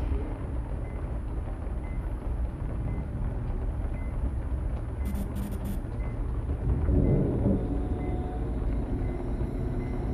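Low, steady rumbling drone of a dark horror-film ambience, with a swell about seven seconds in.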